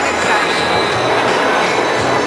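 A formation of F-16 fighter jets flying past, their engines making a loud, steady roar.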